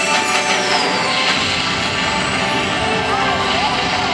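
The show's soundtrack playing over outdoor loudspeakers, here a passage of sound effects rather than music. A high whistling sweep falls in pitch during the first second, with voices mixed in and smaller pitch sweeps near the end.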